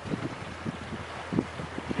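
A boat's motor running with a steady low hum, under irregular gusts of wind buffeting the microphone.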